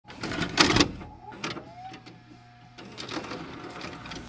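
Video cassette recorder mechanism loading a VHS tape: a loud clatter about half a second in, then a short motor whir that rises in pitch and holds, and a few sharp clicks near the end.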